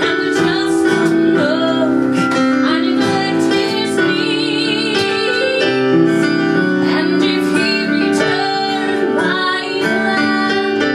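A woman singing a musical-theatre ballad live over piano accompaniment, holding a long note with vibrato about four seconds in.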